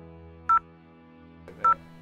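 Smartphone dial pad sounding two short touch-tone (DTMF) beeps, a little over a second apart, as digits of a bank USSD code are keyed in.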